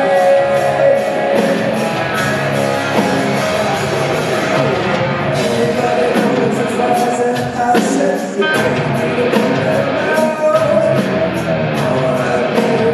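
Rock band playing live: electric guitars, bass guitar and drum kit with cymbals, with a male voice singing.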